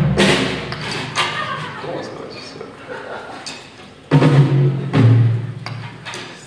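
Live rock band with electric guitar, bass and drums playing in loose, loud bursts: a heavy bass-and-drum hit at the start, then two more about four and five seconds in, with ringing and quieter noise between.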